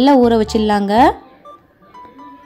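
A woman's voice for about the first second, ending on a rising pitch, then quiet with faint thin beep-like tones.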